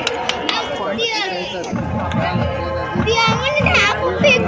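Marching band music on the field, with low drum and brass sound coming in about two seconds in, heard under the close-by chatter and shouts of children and spectators in the stands.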